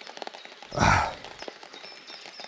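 Light rain ticking with faint scattered drops. About a second in comes one short breathy burst.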